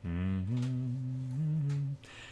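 A man humming a few low notes with his mouth closed for nearly two seconds, the pitch stepping up twice.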